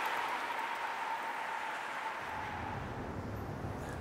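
Downtown city street ambience: a steady wash of traffic noise, with a low rumble coming in about halfway through and a faint high hum that fades out.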